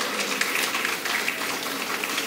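Audience applauding: a steady clatter of many hands clapping.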